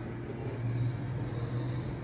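A steady low hum under a faint even hiss, with no sharp sounds: background machinery or traffic.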